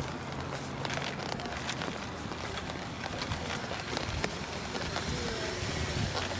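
Outdoor rushing noise with small crackles, typical of wind and handling rustle on a handheld phone's microphone while walking.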